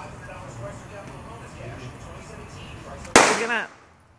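A single sharp firecracker bang about three seconds in, after low background voices, followed by a brief cry.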